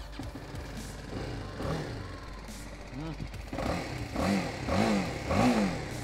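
BMW G310R's single-cylinder engine running through its exhaust, a steady low idle, blipped a few times in the second half so the pitch rises and falls.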